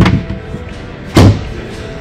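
Two thuds from the plastic divider panel in a Ford F-150 Lightning's front trunk being moved and folded down, the second, about a second in, the louder. Background music plays throughout.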